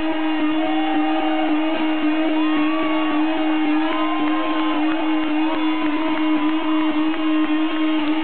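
Electric guitar feedback through stage amplifiers: one loud, unbroken drone held on a single low-mid pitch, with higher wavering tones sliding up and down over it, left ringing at the end of the show.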